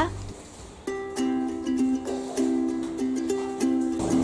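Background music: a light plucked-string tune that comes in about a second in, after a brief lull.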